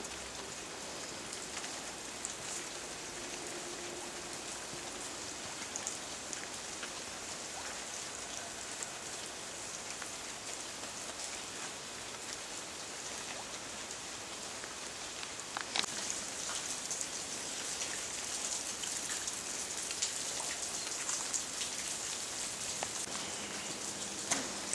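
Steady rain pattering on leaves and the ground, an even hiss with scattered sharper drop taps, growing a little louder about two-thirds of the way through.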